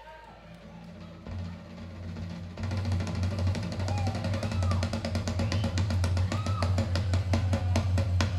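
Live rock band: a low bass note held from about a second in, joined after about two and a half seconds by a fast, loud drum roll on drums and cymbals that keeps going, with a few guitar note bends on top.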